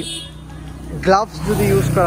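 Yamaha R15 V4's single-cylinder engine idling steadily under the voice. A louder rushing noise swells up in the second half.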